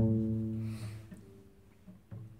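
Double bass string plucked: one low note starts sharply and rings, fading away over about a second and a half.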